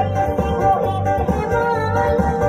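Amplified live music: a woman singing through a microphone over plucked strings and a steady, repeating bass beat.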